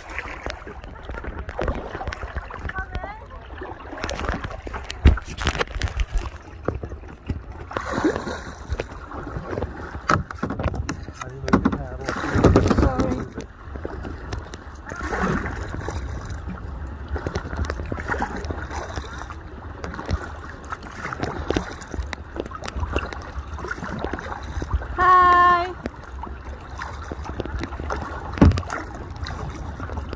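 Kayak paddling on open lake water: irregular splashes and sloshing of paddle strokes against the hull, over a steady low rumble. Faint voices come and go, and one held voice call sounds near the end.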